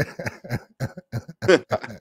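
A man laughing: a quick, even run of short "ha" bursts, about five a second.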